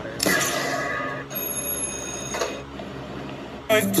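Bright ringing electronic tones played from a phone's speaker, in two parts of about a second each. A woman starts singing near the end.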